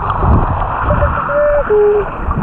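A person's voice muffled under water, humming a held note that steps down to a lower one, about a second in, over the constant rush and slosh of water around the submerged camera.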